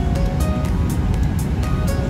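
Background music with a steady beat and short melodic notes, over a low steady rumble.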